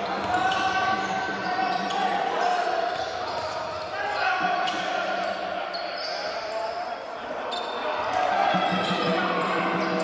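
Basketball being dribbled on a hardwood court during play, with players' voices calling out, in a large echoing sports hall.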